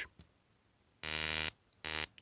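12 kV gas burner igniter module firing sparks across its high-voltage leads: a rapid, buzzing train of spark snaps. A half-second burst comes about a second in and a shorter one near the end.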